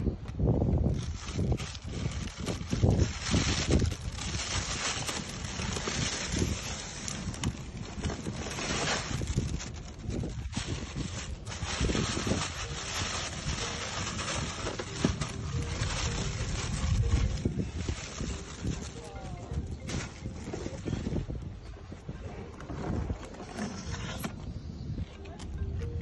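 Plastic bags rustling and crackling as they are handled in a plastic cooler box, over a low rumble of wind on the microphone, with people talking.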